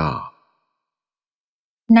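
Speech only: a voice finishes the last word of a recited verse, then there is about a second and a half of silence, and speech starts again just before the end.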